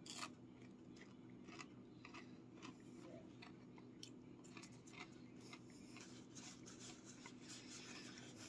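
Faint, irregular crunches of someone chewing a crunchy breaded fish stick, over a steady low room hum. Softer rubbing, like fingers being wiped together, comes in near the end.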